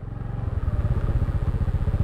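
Honda scooter's small single-cylinder engine running at low speed while being ridden: a steady low chugging with fast, even pulses that grows a little louder across the two seconds.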